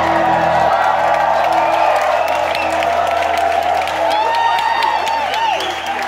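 Live rock band's song ending about a second in, its bass and drums cutting away to lingering steady guitar and amplifier tones, while the club crowd cheers and claps, with shouts gliding up and down about four to five seconds in.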